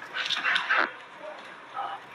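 A dog gives a few short yelps in the first second.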